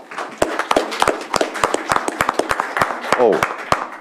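People applauding, with the separate claps distinct and irregular throughout.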